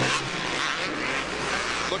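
Supercross race sound: dirt bike engines mixed with stadium crowd noise, a dense, steady din.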